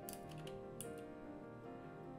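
Soft background music with held notes, under a few sharp computer keyboard key clicks.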